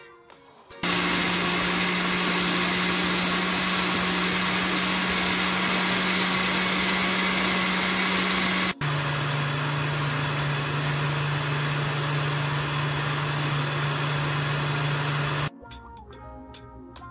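Blender running on a smoothie of fruit, spinach, almond milk and crushed ice: a loud steady whir for about eight seconds, a split-second stop, then a second run of about seven seconds at a lower motor pitch that cuts off shortly before the end.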